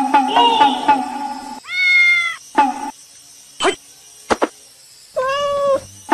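Plucked-string music with a bouncy rhythm fades out in the first second and a half. A domestic cat then meows twice, once about two seconds in and again near the end, each call a short rise and fall, with two brief sharp squeaks between the meows.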